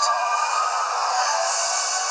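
Trailer background music: a sustained passage of held, wavering notes with no break.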